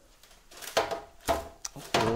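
A parchment-lined metal sheet pan being handled with tongs: a few knocks, scrapes and paper rustles in the second half.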